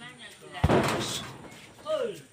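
A Muay Thai kick landing once with a sharp, hard smack about half a second in, followed by a short rush of noise.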